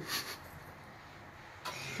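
Quiet room tone with a faint low hum in a pause between a man's sentences: a short breath just after he stops speaking, and another breath in near the end before he speaks again.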